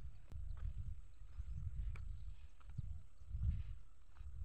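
Faint footsteps over dry, tilled field soil, a few light irregular clicks, over a low fluctuating rumble of wind on the microphone.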